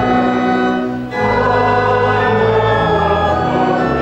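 Congregation singing a hymn together with organ accompaniment, in long held chords, with a brief break between lines about a second in.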